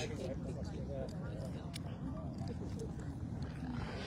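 Kilauea lava fountain gushing, a steady low roar with faint scattered crackles; faint voices murmur in the background.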